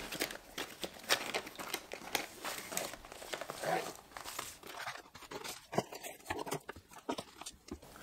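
Unboxing noise: a cardboard box sleeve is slid open and plastic-wrapped vacuum bags are pulled out and handled, giving a scatter of faint, irregular plastic rustles and small cardboard taps.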